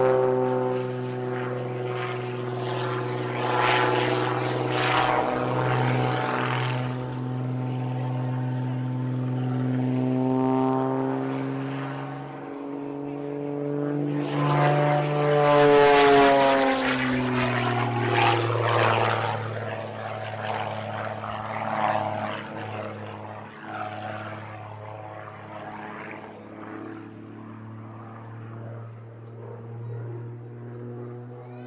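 Extra 330 aerobatic plane's six-cylinder engine and propeller in flight through aerobatic figures. The note changes pitch steadily with throttle and speed, climbs to its loudest about halfway through, then drops in pitch and fades as the plane moves away.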